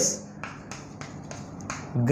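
Chalk tapping and scratching on a blackboard as a word is written: a series of short, light clicks.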